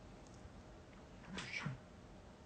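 A toy poodle gives a brief, squeaky whine in two quick parts about a second and a half in. The dog is sleepy.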